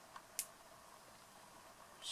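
Near silence: room tone, with two small clicks about a quarter of a second apart in the first half second.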